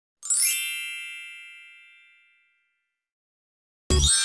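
A bright chime sound effect: a quick upward shimmer into a ringing chord that fades away over about two seconds.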